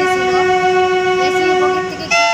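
Train horn sounding one long, steady, unbroken note that cuts off near the end.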